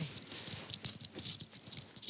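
A handful of coins jingling and clinking together in the hands as they are shared out: a quick, irregular run of light metallic clicks.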